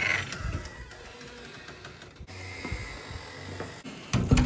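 Hands working a wooden room door and its metal lever handle: rattling and clicks, loudest at the start.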